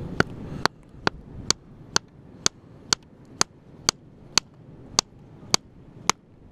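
Hammer tapping on a rock concretion to split it open in search of a fossil crab: about a dozen sharp, evenly paced strikes, roughly two a second.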